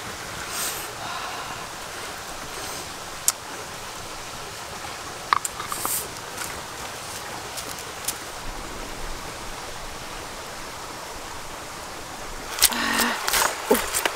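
Steady rush of a small forest stream, with a few sharp clicks from the wood fire in the first half. Water splashing starts near the end.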